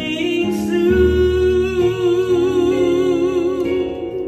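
A woman sings a slow song into a microphone, holding one long note with vibrato, accompanied by sustained piano-style chords on an electronic keyboard, with a deep bass note coming in about a second in.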